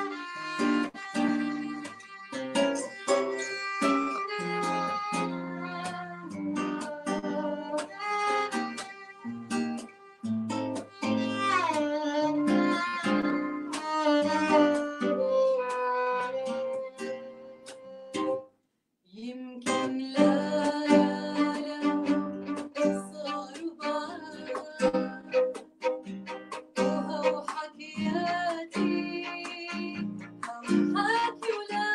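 Violin and acoustic guitar playing a song together, the violin carrying the melody with sliding notes over the plucked guitar. The sound cuts out completely for about half a second a little past the middle, then the playing resumes.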